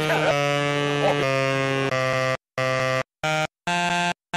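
Saxophone sounding long, steady held notes that step to new pitches a few times. From about halfway it plays a string of short notes, each cut off into dead silence.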